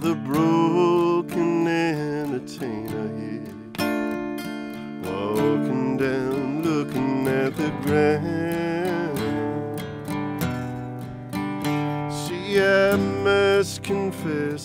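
1989 Gibson J-45 acoustic guitar played solo in an instrumental break, picked single notes and strummed chords in a steady flow.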